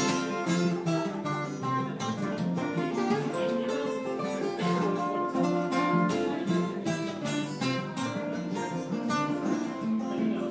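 Three acoustic guitars played together in an instrumental passage: steady strummed chords with picked melody notes ringing over them, no singing.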